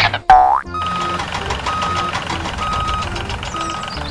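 Children's background music with added cartoon sound effects: a loud quick glide down in pitch near the start, then four evenly spaced beeps about a second apart, like a reversing warning beeper.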